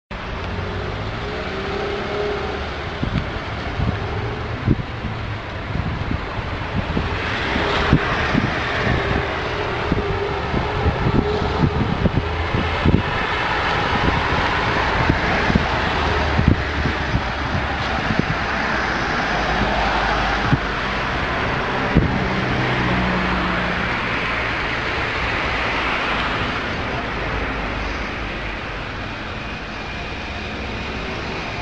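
Outdoor urban background of road traffic with wind on the microphone, overlaid by a run of sharp clicks and knocks through the first two-thirds.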